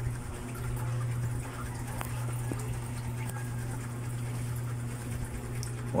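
Steady low hum over an even background hiss, with a faint click about two seconds in.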